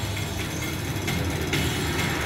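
Soundtrack of a wildlife documentary's cheetah chase played over an auditorium's loudspeakers, between lines of narration: a steady, even rush of noise, heaviest in the low range.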